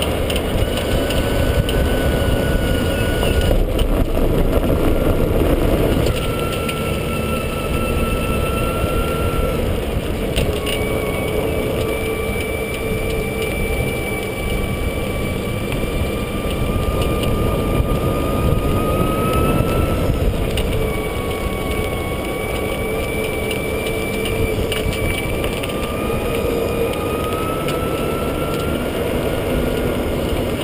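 EZGO RXV golf cart driving along a paved path, heard close from the cart's body: a steady rumble of tyre and wind noise with a thin whine that drifts up and down in pitch as the speed changes.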